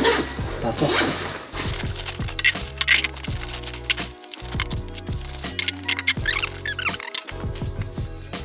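Background music with a steady beat, over which bubble wrap crinkles and rustles in short bursts as it is pulled off ceramic dishes.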